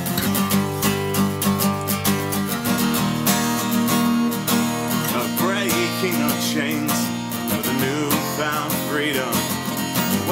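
Instrumental break in a song: steadily strummed acoustic guitar, with a wavering lead melody coming in about halfway through.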